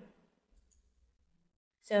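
A faint computer mouse click about half a second in, otherwise near silence.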